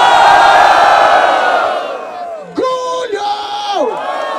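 Large crowd cheering and screaming loudly for about two seconds as a vote by noise for an MC, then dying down; a single man's drawn-out shout follows near the end over the remaining crowd.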